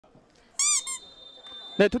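Referee's whistle blown for the kickoff: a short, loud blast of about a third of a second, then a brief second blast right after it.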